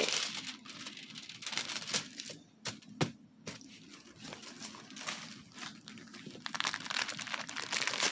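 Plastic film crinkling and rustling as a diamond-painting canvas and its kit packaging are handled and moved about, with a few sharp clicks about two and a half to three seconds in.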